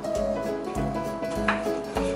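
Background music with a steady bass beat. About one and a half seconds in, a cleaver chops once through a raw chicken onto a plastic cutting board.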